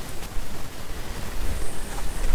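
Wind and camera handling on the microphone: a steady hiss over an uneven low rumble.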